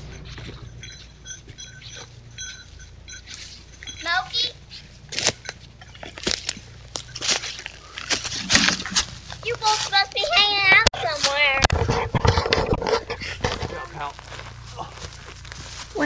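Voices of a child and adults talking as they walk up through ferns and brush, with rustling, brushing footsteps, heard through a trail camera's microphone over its steady low hum. The voices grow louder and closer about two-thirds of the way through.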